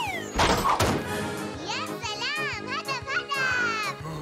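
Cartoon soundtrack: a short noisy crash or hit about half a second in, then music with high, swooping child-like vocal sounds rising and falling.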